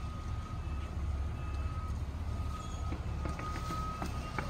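Steady low background rumble with a faint, steady high-pitched whine running through it.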